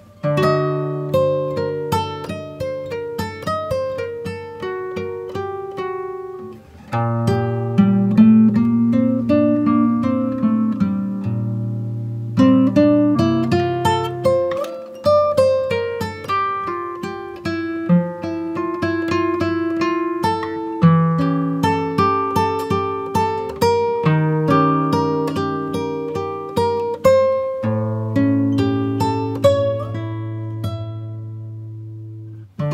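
Background music: solo acoustic guitar picking a melody, one plucked note after another, with no singing.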